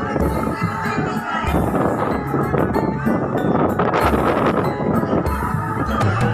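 Music with held tones over a slow, regular low beat.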